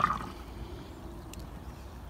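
Liquid being poured from a cup through a plastic funnel into a papier-mâché volcano, a faint steady pour after a short sound at the start.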